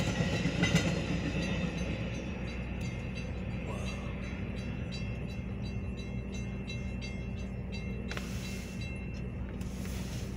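A Metra bi-level commuter train clattering past, fading over the first couple of seconds as its last car clears the crossing. After that the grade-crossing warning bell keeps dinging in an even rhythm over a steady low hum.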